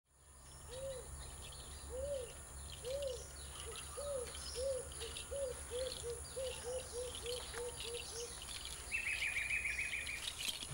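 Tropical rainforest ambience. A bird gives a series of low hooting notes that start about once a second, speed up to about three a second, and stop about eight seconds in. Behind it runs a steady high insect buzz, and near the end comes a short, quick, higher-pitched trill.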